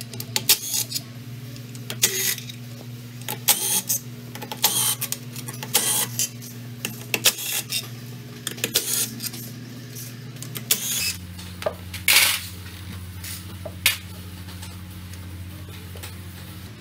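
Irregular light metallic clicks and clinks of bolts and hand tools being handled while the bolts of a scooter's CVT transmission cover are taken off. A steady low hum runs underneath and drops in pitch about eleven seconds in.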